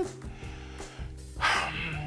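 Low background music, then about one and a half seconds in a short, loud, breathy exhale from a man.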